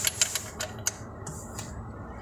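Ratchet wrench clicking as a gearbox plug is snugged up by hand: a quick run of clicks at the start, then a few single clicks about a second in.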